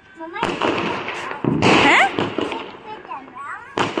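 Firecrackers going off: a sharp bang about half a second in, more bangs with crackling about a second and a half in, and another bang near the end.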